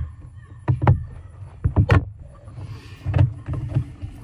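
A few dull hollow knocks and scrapes of hands and a plastic waterer cup against the wall of a plastic trash can as the cup is twisted into its hole, heard from inside the can. The loudest knocks come about one second in and twice just before two seconds.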